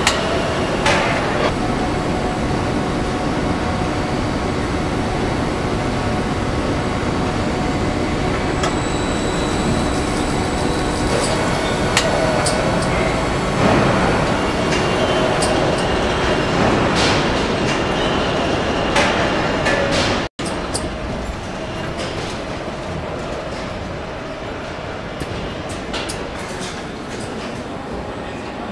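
Car assembly line machinery: a steady loud hum and rumble of conveyors and carriers with a few faint steady tones and occasional clanks and clicks. The noise cuts out for an instant about two-thirds of the way through and comes back a little quieter.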